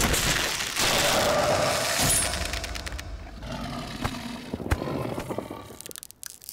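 Dramatic film sound effects: a loud rush of noise with scattered sharp impacts, heaviest over the first two seconds and easing off, with a single sharp crack nearly five seconds in.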